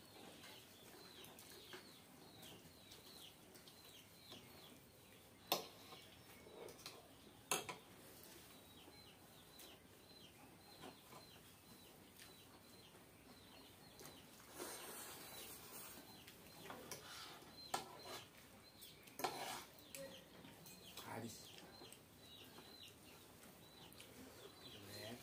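Quiet eating with metal forks on plates of fried instant noodles: a few sharp fork clinks against the plates, two of them about five and a half and seven and a half seconds in, and soft slurping and chewing noises in the second half.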